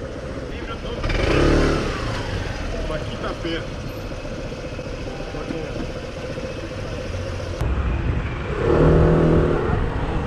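Street traffic: a steady hum of motor vehicles, with an engine swelling louder twice, about a second in and again near the end.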